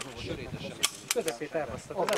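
Three sharp pistol cracks about a quarter second apart, the first the loudest, amid men talking.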